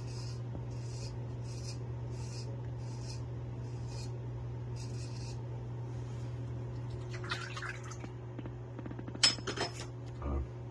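Naked Armor Erec straight razor scraping stubble in short, even strokes, a little over one a second, over a steady low hum. Near the end come a run of scratchy clicks and one sharp clink.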